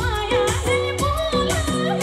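A woman singing a Teej song live through PA speakers, her ornamented voice wavering over held instrumental chords, bass and a regular percussion beat.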